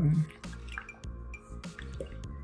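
Several small sharp clicks of pet nail clippers snipping a golden retriever puppy's claws, over quiet background music. A man's voice trails off just at the start.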